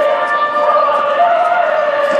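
A man's voice through a handheld megaphone, holding one long drawn-out note with a small step up in pitch a little after halfway; the megaphone gives it a thin, tinny sound with no low end.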